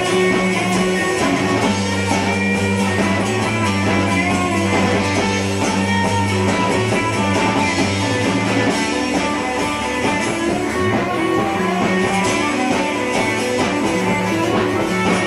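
Rock band playing live, with electric guitars strumming over sustained bass notes in a steady, continuous passage.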